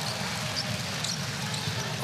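Steady crowd noise in a basketball arena, with a basketball being dribbled on the hardwood court.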